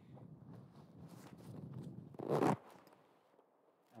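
Rustling and scraping close to the microphone, growing to one short, loud scrape a little over two seconds in, then stopping.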